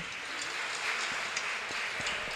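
Audience and panel applauding, a steady patter of many hands clapping.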